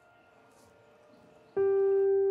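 Soft background piano music: after a near-silent stretch, a single note is struck about one and a half seconds in and rings on.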